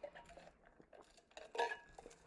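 Faint sounds of a man drinking from an insulated metal tumbler: small clicks and mouth sounds, with a short clink of the tumbler about a second and a half in.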